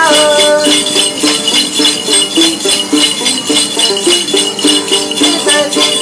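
Tày-Nùng Then ritual music: a đàn tính gourd lute plucked in a quick running melody over the steady shaken jingle of a bell rattle. A man's singing voice is heard briefly at the start and comes back near the end.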